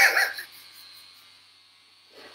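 A man's short, breathy laugh right at the start, trailing off into quiet room tone.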